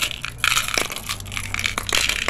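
Glass marbles clicking and rattling against each other as a hand rummages through a clear plastic bowl full of them: a dense run of small, quick clicks.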